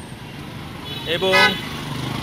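Street traffic noise with one brief, loud pitched sound about a second in.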